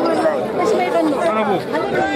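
Many people talking at once: overlapping crowd chatter with no single voice standing out.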